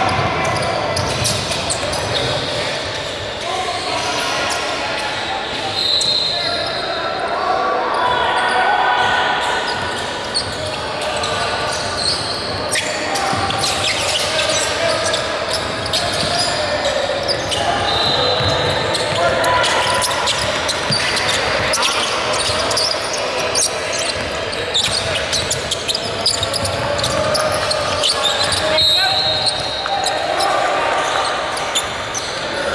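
Basketball game sounds in a large gymnasium: a ball bouncing on the hardwood court, with players and spectators calling out, all echoing in the hall. A few brief high-pitched tones come and go.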